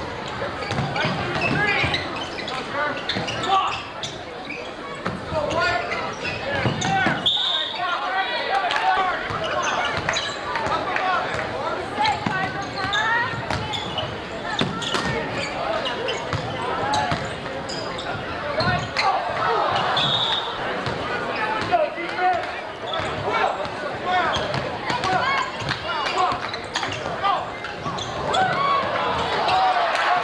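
Basketball being dribbled on a hardwood gym floor, its bounces ringing in a large hall over a steady babble of crowd and player voices. Two short high whistle blasts sound, about 7 and 20 seconds in.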